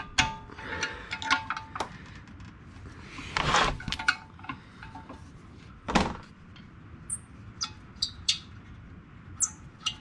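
Metal hand tools clinking against a bolt and the car's underside as a combination wrench backs out a bolt freed from its thread-locker. Light scattered clicks, a longer scraping rustle about three and a half seconds in, and one sharper knock about six seconds in.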